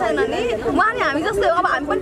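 Speech only: a woman talking continuously.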